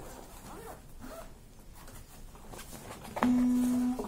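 Zipper of a padded guitar gig bag being pulled open, with faint scraping and rustling. About three seconds in, a loud steady low tone begins suddenly and cuts off abruptly less than a second later.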